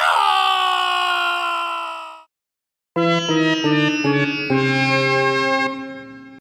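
A drawn-out dramatic shout of "Nooo!" lasting about two seconds, followed after a short gap by a brief comic music sting: a few quick stepped notes ending on a held note that fades away.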